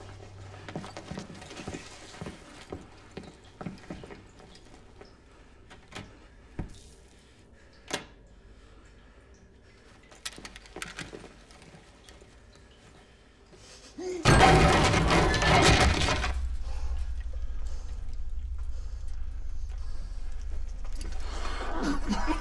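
Film soundtrack: faint scattered knocks and clicks of movement, then a sudden loud crash of something breaking about two-thirds of the way in, giving way to a steady low drone.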